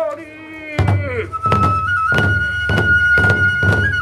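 Kagura ensemble: a chanting voice ends within the first second. Then barrel drums (taiko) come in with loud strokes, often struck in pairs, and a bamboo transverse flute (fue) enters holding one long high note that wavers in small steps.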